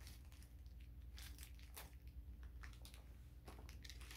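Faint, scattered crinkles and rustles of packaging being handled as the sunglasses are unpacked.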